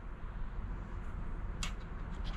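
A coin scraping briefly across the latex coating of a scratch-off lottery ticket about one and a half seconds in, over a low steady background hum.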